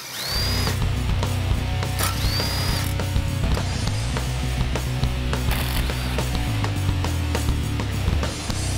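Ratcheting and clicking of hand and power tools taking apart a small single-cylinder engine, with two brief rising whines of a power tool spinning up near the start, over steady background music.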